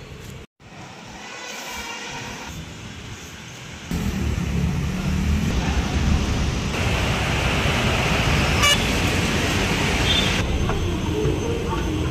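Road traffic noise with a short car horn toot, quieter at first and then stepping up abruptly to a loud, steady traffic din about four seconds in.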